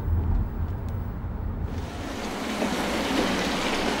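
A car's low engine and road rumble heard from inside the cabin, then about two seconds in, a sudden change to the hiss of a minivan's tyres on a wet street as it drives up.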